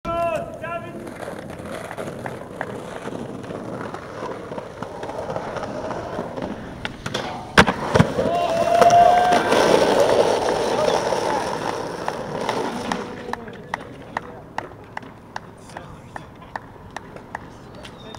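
Skateboard wheels rolling on pavement, with one sharp clack of the board about seven and a half seconds in, the loudest sound. Voices follow, and near the end come evenly spaced ticks, a little over two a second.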